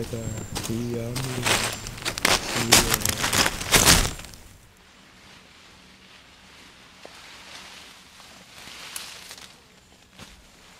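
Men laughing and talking for the first four seconds, then quiet outdoor background.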